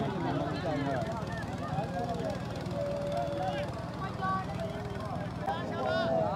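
Crowd of spectators talking and calling out at once, many voices overlapping, one voice holding a long call about halfway through, over a steady low rumble.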